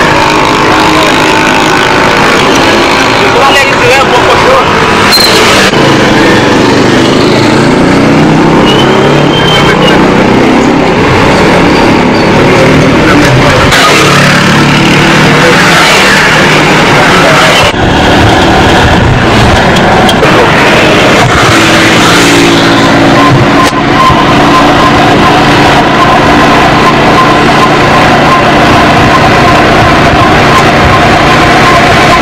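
Loud street noise: motorcycle engines running and passing, mixed with people's voices.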